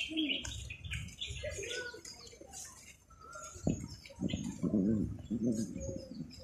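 Birds chirping and calling, with a lower wavering, cooing call near the end and a single sharp knock a little past the middle.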